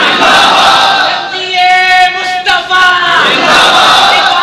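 A crowd of listeners shouting together loudly in a religious gathering, broken for about a second in the middle by one long held note sung by a man.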